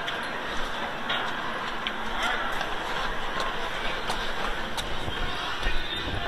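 Footsteps climbing concrete stadium stairs, a light tap roughly every two-thirds of a second over steady open-air stadium noise.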